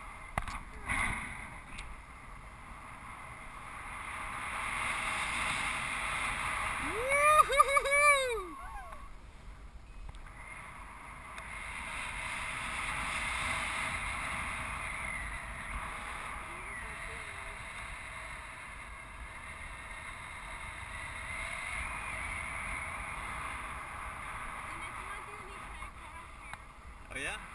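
Steady rush of airflow buffeting a helmet-mounted camera microphone on a paraglider in flight. About seven seconds in, a short loud vocal outburst of a few rising-and-falling cries cuts through it.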